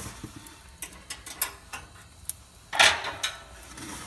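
Scattered metal clicks and clinks of steel rib-hanging hooks against the barrel cooker and an aluminium pan as a hanging rack of ribs is lifted out, with a louder scrape about three seconds in.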